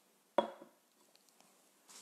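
A drinking glass set down on a hard surface: one sharp clink with a short ring about half a second in, then a faint rustle near the end.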